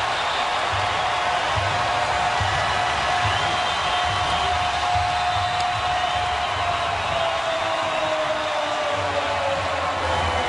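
Stadium crowd cheering a home goal, with music and a low, even beat running under the noise and a long held tone that slowly falls in pitch.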